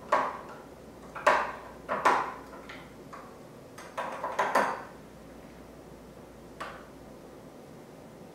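Metal spoon stirring grated carrot in oil inside glass jars, clinking against the glass in short irregular clusters through the first five seconds and once more near seven seconds.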